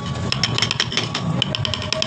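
Chisel being driven into wood by rapid light mallet taps, several strikes a second, while carving relief.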